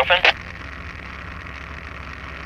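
Steady drone of a fixed-wing model aircraft's combustion engine and propeller in cruise, mixed with the rush of air past the airframe, heard from a camera mounted on the plane.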